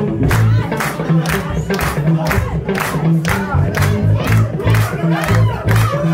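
Live disco-funk band playing, with a steady beat about two strokes a second and a pulsing bass line, and a dancing crowd's voices shouting and singing along over it.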